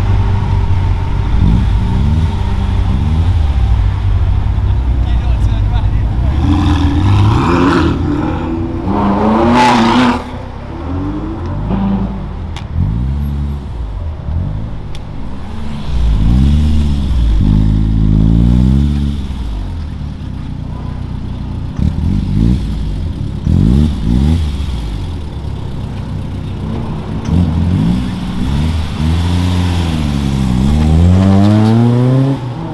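Sports car engines idling and revved in repeated short blips, the pitch climbing and falling back each time. Near the end a car accelerates away, its engine note rising.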